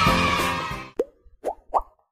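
Background music fading out, followed by three short rising pop sound effects, the last two close together.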